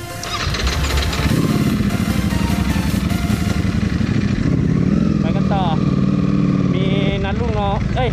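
A Ducati V4 superbike engine accelerating away from a standstill. It revs up over the first second or so, then runs at steady high revs.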